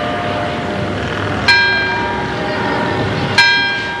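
A church bell tolling slowly. It is struck about a second and a half in and again near the end, and each stroke rings on and fades while the last one is still sounding.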